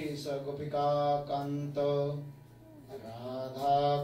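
A man chanting a mantra in a steady, sing-song recitation, each syllable held on a near-level pitch with short breaks between phrases.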